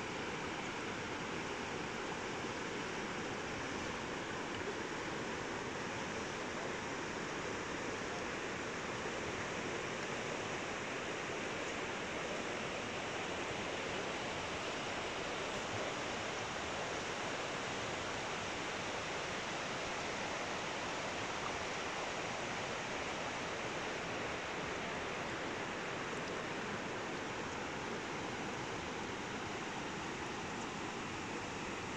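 Steady rush of a shallow river running over rocks, an even hiss with no breaks.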